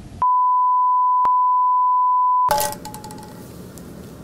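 A steady, high-pitched censor bleep lasts a little over two seconds and blanks out all other sound while it plays, with one click about a second in; it masks the host's swearing. Studio room sound returns near the end with a few light clicks.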